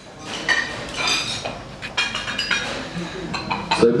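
Dishes and cutlery clinking, with a run of short, sharp clinks that ring briefly, over a low murmur of voices.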